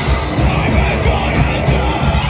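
A heavy band playing live at full volume: distorted guitars and drums with cymbal crashes, and the vocalist screaming into the microphone.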